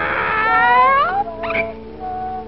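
Cartoon cat's drawn-out yowl, voiced by an actor, gliding up in pitch near its end, then a short second call, over the film's background music.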